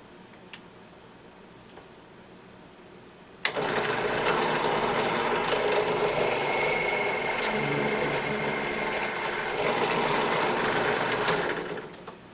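Benchtop drill press motor starting suddenly a few seconds in and running steadily for about eight seconds, spinning a roll-crimp tool on a plastic shotshell hull to roll-crimp it over a clear overshot card, then cutting off.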